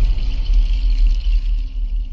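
TV channel logo sting: a loud, deep bass rumble under a thin high shimmer, the high part fading toward the end.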